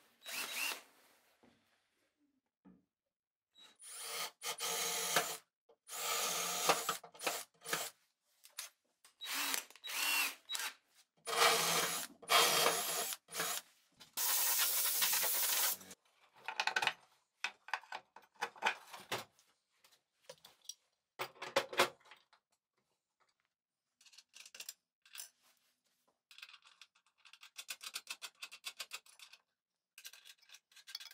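Handheld power drill running in about five short runs of one to two seconds each, spinning up and stopping. Scattered light knocks follow, then a fast run of light clicks near the end.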